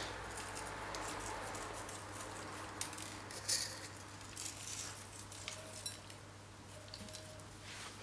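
Faint patter and a few soft clicks as salt is shaken from a glass jar onto a bowl of tuna salad.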